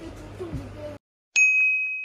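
A single bright ding chime, the end-card sound effect, struck about a second in and ringing out as it fades. Before it, room sound and a brief bit of voice cut off abruptly.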